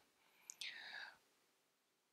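A soft mouth click about half a second in, then a brief breath from the speaker into a handheld microphone; otherwise near silence.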